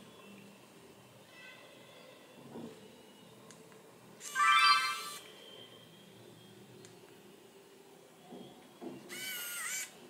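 Nikon Coolpix L29 compact camera playing its short electronic start-up chime about four seconds in, as it powers on and the lens extends. A second, wavering electronic tone follows near the end as it is switched off, with a few faint clicks in between.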